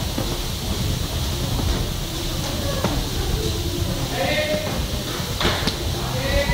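Muay Thai sparring in a busy gym: steady low room rumble, a voice calling out with a drawn-out shout about four seconds in, and a couple of sharp knocks of gloved strikes near three and five and a half seconds.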